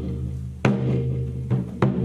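Korean traditional drum struck with a stick: one stroke about two-thirds of a second in, then two strokes close together near the end, over a steady low droning tone.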